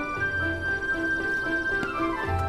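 Background music: a soft drama score with a repeating figure of short mid-pitched notes over a held high tone and a low bass note.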